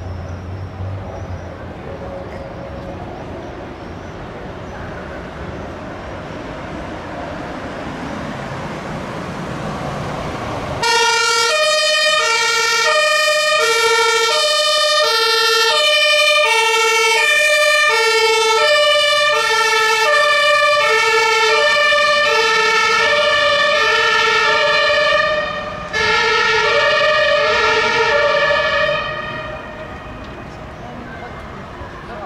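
A Mercedes Sprinter fire-service command van's two-tone siren (German Martinshorn) switches on suddenly about a third of the way in. It alternates between a low and a high tone, each held a little over half a second, breaks off briefly near the end, sounds again, and stops just before the end. Before the siren starts, road noise swells steadily.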